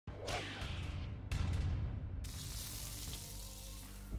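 Logo-reveal sound effects: a falling whoosh, a deep low hit about a second and a half in, then a sudden hissing swell that slowly fades out.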